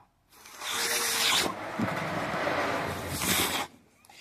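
Long breathy hissing and rubbing from a man's mouth pressed against a pit bull's muzzle in a close kiss, swelling twice: about a second in and again near the end.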